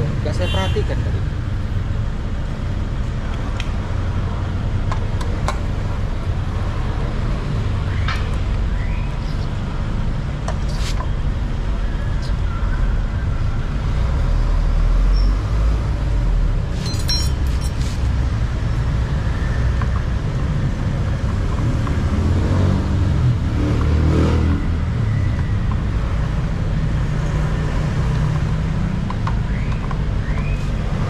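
Steady low background rumble, with occasional sharp metallic clicks and taps from a socket wrench loosening the bolts of a Honda PCX scooter's CVT cover. There is a short run of quick clicks a little past the middle.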